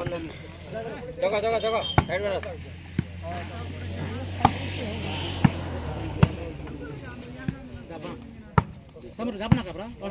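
A volleyball being struck by hands during a rally: sharp slaps come roughly once a second, about eight in all, among players' shouts.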